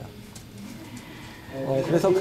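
A short pause in a man's speech, filled only by a faint, low voice-like murmur, with the man's speech starting again near the end.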